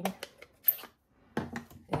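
Plastic ink pad case being handled and snapped open: a few sharp plastic clicks and knocks, the sharpest about two-thirds of a second in.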